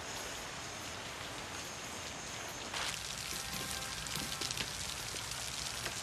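Steady rain falling, muffled at first as if heard from indoors. About three seconds in it turns louder and brighter, with close pattering drops, as rain heard out in the open.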